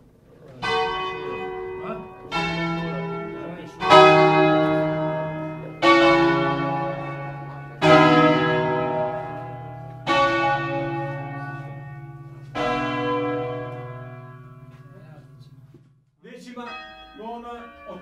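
Two swinging church tower bells, the fifth and fourth of the peal, rung 'a distesa' by hand-pulled ropes. About seven loud strokes sound in turn, each ringing on and fading, with the strokes coming further apart as they go. The ringing dies away shortly before the end.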